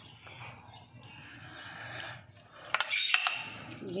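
Spoon stirring a creamy vegetable filling in a glass bowl: soft mixing at first, then a quick run of sharp clinks of the spoon against the glass about three seconds in.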